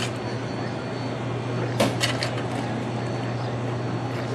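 A shovel working a coal pile, with lumps of coal clattering into a plastic bucket in a few sharp strikes, the clearest about two seconds in, over a steady low hum.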